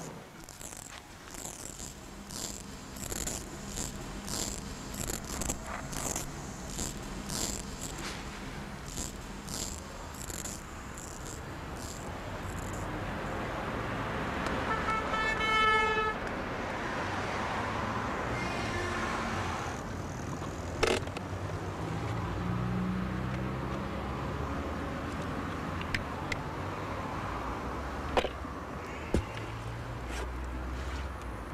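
Short scraping strokes of a razor on a face, repeating about twice a second. About halfway through, a car horn sounds for about a second and a half. Street traffic and a car running follow, with a few sharp clicks near the end.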